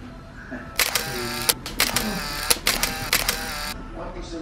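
Camera shutter sound effect clicking in a rapid series of about a dozen shots, starting about a second in and stopping shortly before the end, added in editing as photo prints pop onto the screen.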